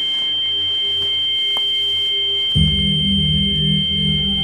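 Film sound design: a steady, high, pure ringing tone held throughout, joined suddenly a little past halfway by a loud, wavering low drone.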